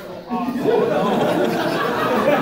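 Audience laughter and chatter: many overlapping voices that swell suddenly about a third of a second in and stay loud.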